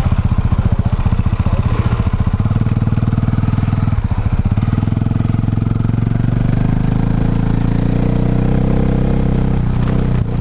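KTM 450 single-cylinder four-stroke engine close to the exhaust, ticking over with an even, pulsing beat, then revving up about four seconds in as the bike pulls away and holding a steady higher note, with a brief dip just before the end.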